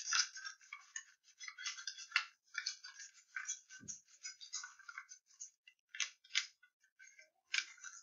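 Scissors cutting through folded magazine paper: a run of short, irregular snips with paper crackling and rustling as it is turned.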